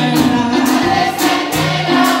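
A live gospel worship song: a group of voices singing together over a steady drum-kit beat and a low sustained bass note, heard through the room's PA speakers.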